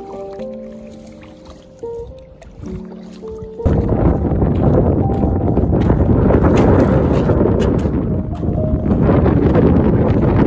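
Soft background music with steady held notes for the first three and a half seconds. Then it is suddenly swamped by loud, rushing wind noise buffeting the microphone on an exposed rocky hilltop.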